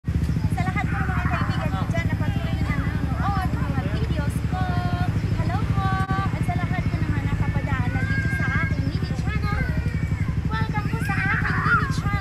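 An engine idling steadily nearby with a fast, even low throb, with voices over it.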